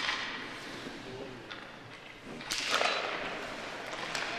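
Hockey skates and sticks on rink ice in an arena: a sharp knock with a trailing echo at the start, then about two and a half seconds in a short scraping hiss of skate blades on the ice.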